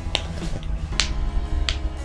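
Three sharp clicks, the loudest about a second in, over a low steady hum.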